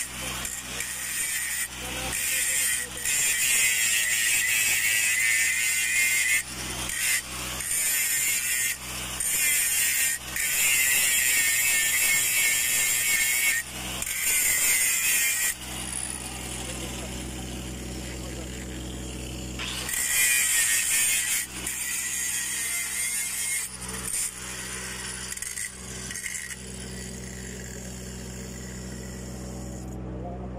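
Angle grinder grinding a weld on a large steel pipe in repeated passes, lifted off briefly between them, preparing the weld for repair. The grinding stops about halfway through, comes back once for a second or two, and then only a steady low hum is left.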